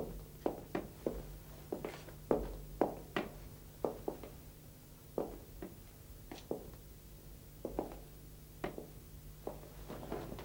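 Footsteps on a hard floor: an irregular run of heel knocks from people walking slowly, some close together, over a faint steady low hum.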